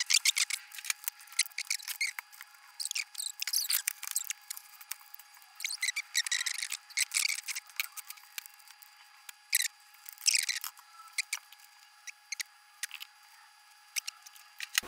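Irregular small clicks, ticks and scratchy scrapes of wire cutters, wires and plastic battery holders being handled while the holders are wired and soldered together. The sound is thin and tinny with no low end, over a faint steady tone.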